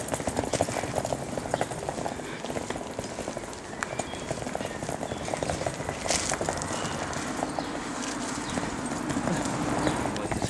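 Footsteps of people walking on paving stones, a dense run of light clicks and scuffs that goes on throughout.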